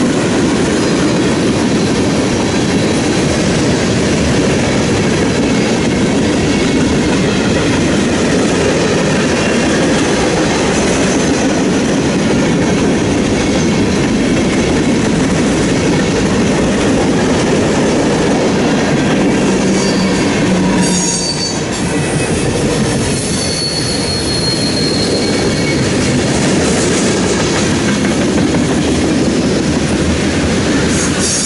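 Freight train cars rolling past at close range: a steady rumble and clatter of steel wheels on the rails, with a faint high squeal a little after two-thirds of the way through.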